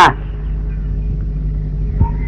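Steady low mains hum with faint hiss, the background noise of an old film soundtrack, between lines of dialogue.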